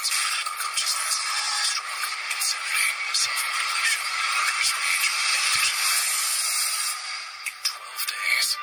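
Movie trailer soundtrack playing through a small speaker: a steady, thin hissing noise with no voices and no beat, fading briefly near the end.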